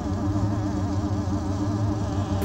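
Background score music: a sustained low synthesizer drone with a higher tone wavering up and down above it.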